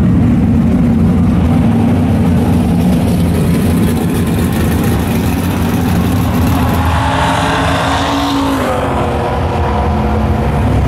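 Vehicle engines running loudly at a drag strip's starting line. About seven seconds in, an engine revs up and drops back, then begins to climb again near the end.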